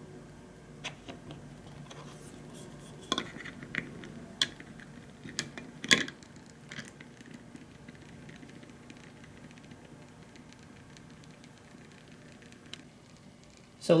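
Small geared stepper motor stepping under the Adafruit Motor Shield's test sketch, a faint steady hum, while a lid is fitted onto its shaft with a series of light clicks and taps, the loudest about six seconds in.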